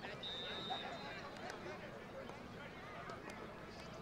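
Faint, distant voices of players and sideline spectators, indistinct chatter and calls. A thin, steady high tone sounds for about a second just after the start.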